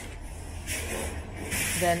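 A soft hiss of noise comes in under a second in and lasts about a second, over a faint low hum.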